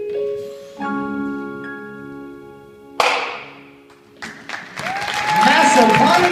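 An indoor percussion ensemble's closing bars: sustained keyboard chords from the front ensemble's mallet instruments, then one loud final crash that rings away. Crowd cheering, whooping and applause start about four seconds in.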